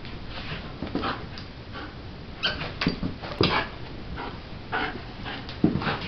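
A greyhound giving short whimpers and grunts as it plays with toys: about half a dozen brief sounds spread across a few seconds, the loudest near the end.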